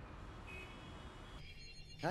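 Faint, steady low hum of the anime's background audio playing under the reaction, with a thin high tone that comes and goes early on and the sound thinning out near the end.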